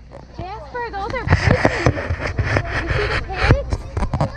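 Small pigs grunting as they feed at a fence, over children's voices.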